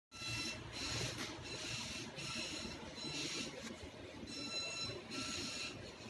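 Room noise with a faint high-pitched electronic whine, one tone with several overtones, that cuts in and out irregularly every half second or so.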